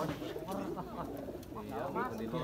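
Domestic pigeons cooing repeatedly, with people's voices mixed in.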